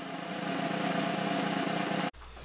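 Snare drumroll sound effect: a fast, even roll that grows slightly louder.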